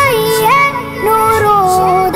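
A child singing a nasheed, drawing out long held notes that slide up into the next pitch and sag slightly as they are held.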